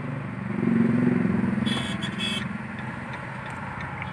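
Road traffic in a jam heard from inside a car: a steady rumble of engines with a low drone that swells and fades over the first couple of seconds. Two short, high-pitched horn beeps come about two seconds in.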